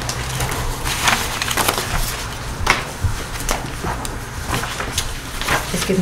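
Sheets of paper rustling and crackling as they are handled, shuffled and passed across a table, in irregular short bursts.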